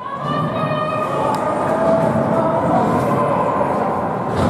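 A steady horn-like tone, fading out about three seconds in, over a noisy din in the ice rink.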